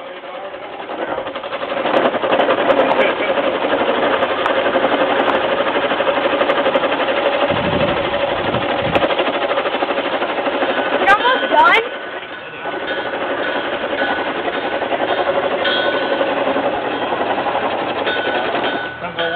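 A wooden lathe driven by a hand-cranked great wheel, with a chisel cutting the spinning wood: a steady, fast chattering rasp of the tool on the workpiece. It starts about two seconds in and dips briefly about two-thirds of the way through.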